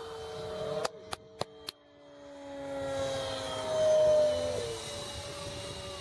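The 64 mm electric ducted fan of a radio-controlled foam jet whining in flight through a roll. A little under a second in come several sharp clicks and the whine nearly drops out, then it swells back, loudest about four seconds in, its pitch sliding slightly downward.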